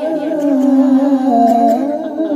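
Several men's voices singing sholawat together through microphones, holding long drawn-out notes and sliding between pitches.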